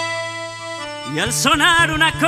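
Live chacarera played by a folk band: an accordion holds a chord, then about a second in the melody moves off, wavering in pitch, over a repeating bass line from the guitars.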